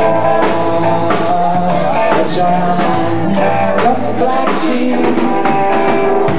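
Live band playing a song on drum kit, electric guitars and keyboard, a melodic line running over a steady beat.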